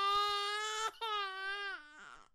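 Drawn-out cartoon-style crying wail as a sound effect: one high held note that breaks off briefly just under a second in, then resumes and sags away near the end.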